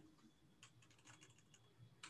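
Faint computer keyboard typing, a scattering of soft key taps.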